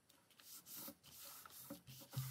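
Faint rustle and soft brushing of paper as a page is laid on a paper envelope cover and smoothed flat by hand, a few quiet strokes.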